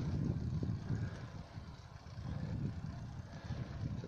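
Low, fluctuating wind rumble on the microphone and road noise of bicycle tyres on asphalt while riding a road bike uphill.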